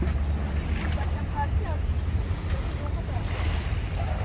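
Steady low wind rumble on the microphone, with faint voices in the background.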